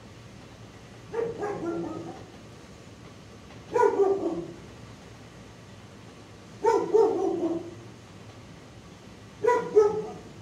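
A dog barking: four drawn-out barks about three seconds apart, each falling slightly in pitch.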